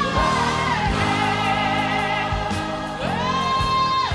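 Female gospel soloist singing with a choir and band behind her: she holds a long high note, lets it fall away, then slides up into another held high note near the end.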